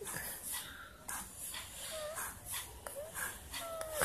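Pen writing on notebook paper: a run of soft scratching strokes, with a few brief faint squeaks about halfway through and again near the end.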